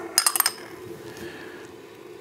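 Glass lid set down on a glass Flute Brewer: a quick cluster of light clinks with a brief high ringing, just after the start.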